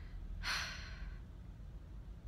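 A woman sighing: one breathy exhale about half a second in that fades away, over a low steady hum.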